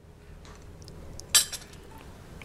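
A few faint small clicks, then one sharp clink about a second and a half in, at a small glass teacup with a metal measuring spoon in it, as a sugar cube goes in and stirring begins.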